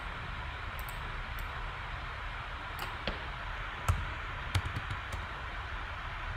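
A few scattered computer keyboard clicks, about seven in six seconds, over a steady background hiss and low hum.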